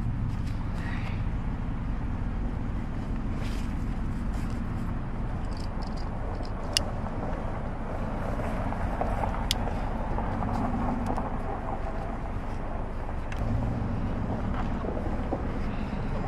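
Steady low rumble of a car engine idling, with two sharp clicks a few seconds apart as a toddler's car seat harness is buckled.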